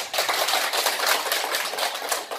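Small seated audience applauding: a dense, steady patter of hand claps.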